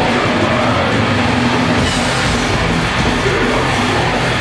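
Death metal band playing live at full volume: distorted electric guitars, bass and drums in a dense wall of sound, recorded from the crowd. The deepest low end thins out for the first couple of seconds, then the full weight comes back in.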